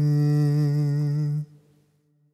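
A male voice holding the last note of a Malayalam film song, sung or hummed on one steady pitch over a soft backing. It stops abruptly about one and a half seconds in.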